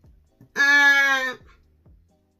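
A woman's voice holds one steady sung note for about a second, starting about half a second in.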